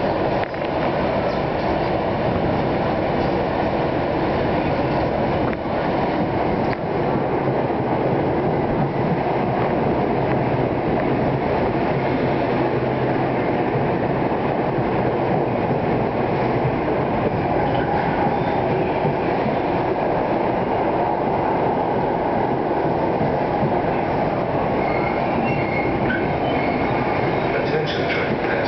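NJ Transit Arrow III electric multiple-unit train pulling in alongside the platform to stop. Its wheels and motors make a steady rumble as the cars roll past, with a few faint high squeals near the end.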